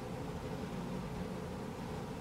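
Steady, even background hiss of room tone, with no distinct sounds.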